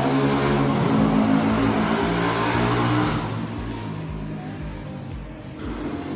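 A motor vehicle engine running with a steady low hum, loud for about three seconds and then fading away.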